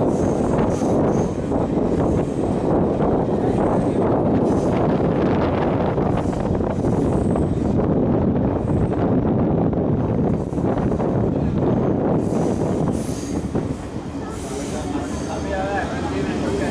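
A Sri Lankan Railways Class S8 diesel multiple unit under way, heard from inside a carriage: a dense, steady running rumble of wheels on track and engine. It eases slightly near the end, where voices come through.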